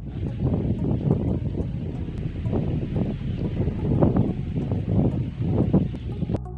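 Wind buffeting the camera microphone in uneven gusts, a low rumbling noise that swells and dies back several times.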